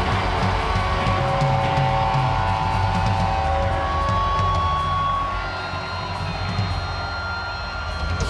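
A rock band playing live, with distorted electric guitars to the fore holding long, ringing notes. The sound eases a little from about five seconds in.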